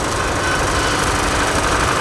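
Stick (electrode) arc welding on a heating-main pipe: a steady, loud crackling hiss from the welding arc, with a faint steady low hum beneath it.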